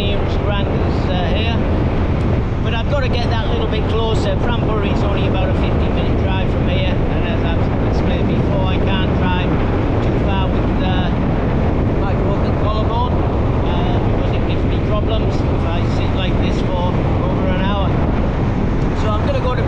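Wind rushing over the microphone of a moving motorbike, a steady low rumble, with a man talking over it throughout.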